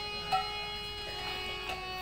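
Steady held instrumental tones carry on from the kirtan accompaniment in a pause between chanted lines, with a faint tick about a third of a second in and another near the end.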